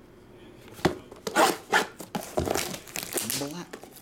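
A cardboard trading-card blaster box being cut and torn open: a knock about a second in, then a quick run of sharp scraping and tearing strokes, followed by lighter rustling of the cardboard.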